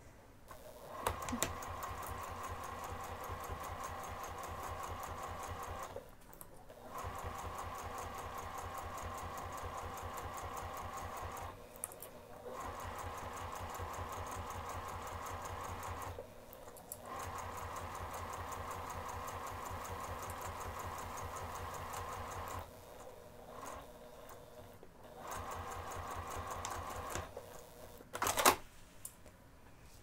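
Domestic sewing machine stitching a seam through fabric and zipper tape, running at an even pace in about five stretches of a few seconds each, with short stops between them.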